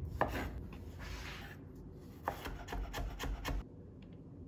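Chef's knife cutting a spring onion on a wooden cutting board. A scraping slicing stroke comes first, then a quick run of about six or seven knife strikes on the board in the second half that stops shortly before the end.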